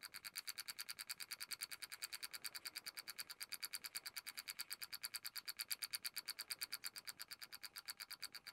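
Electric expansion valve's stepper-motor head clicking faintly and very evenly, about nine clicks a second. Each click is a 12 V pulse stepping the head's permanent magnet, driving the valve pin open one step at a time.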